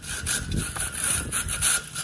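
Wire-bristle chimney brush on an extension pole scraping against the inside of a metal stovepipe as it is pushed down, in several uneven strokes. It is a tight fit because the pipe walls are crusted with soot.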